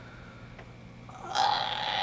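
Quiet room tone with a faint hum, then, past halfway, a sudden loud, raspy throat sound from a man's open mouth.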